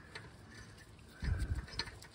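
Steel lug nut being spun by hand onto a wheel stud: light metallic clicks and clinks, with a heavier low handling thump a little past the middle and a sharp click near the end.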